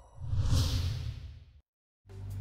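A whoosh sound effect for the animated logo: a high hiss over a deep low rumble that swells up just after the start and fades away before the end.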